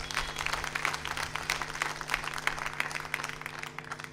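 Audience applauding, a dense patter of many hands clapping, over a low steady hum.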